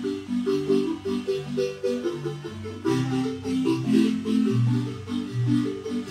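Guatemalan wooden marimba played by three players with mallets: a continuous stream of melody notes over a steady bass line.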